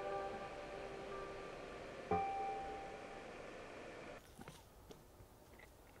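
Soft piano music: held notes fade away, a single new note is struck about two seconds in and rings down, then the music cuts off abruptly after about four seconds, leaving only faint outdoor background with a few small clicks.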